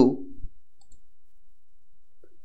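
A spoken word trails off, then quiet room tone with a faint click about a second in, from a computer mouse.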